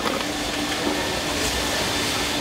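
Steady mechanical background noise: an even rushing hiss with a faint constant hum, and no distinct knocks or starts.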